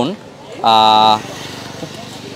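A single steady, buzzy horn tone, held at one flat pitch for about half a second and cutting off abruptly, starting just over half a second in.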